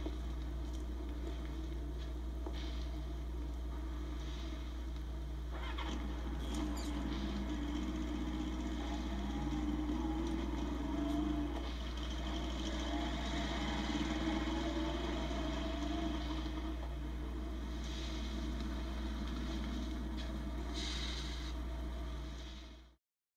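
Police motorcycle engines running, swelling and wavering in the middle of the stretch as the bikes pull away, over a constant low electrical hum.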